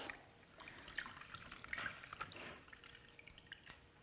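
A cloth being dipped and squeezed by hand in a plastic tub of water: faint, irregular splashing and trickling.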